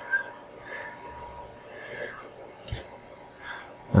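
Quiet room noise with a steady thin tone that fades out about halfway, faint murmured voice sounds, and one sharp click a little after halfway.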